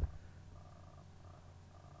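Near silence: faint steady room hum in a pause between narration, after a brief click at the very start.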